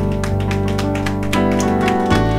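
Electronic keyboard playing held chords over a steady ticking beat, with a chord change just past halfway through.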